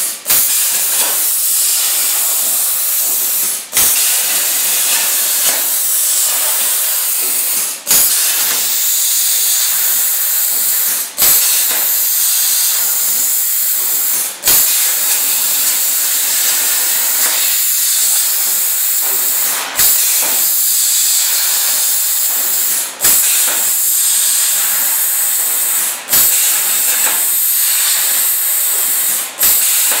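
Hypertherm Powermax45 plasma torch on a CNC table cutting steel plate: a loud, steady hiss of the plasma arc, broken by very short dropouts every few seconds.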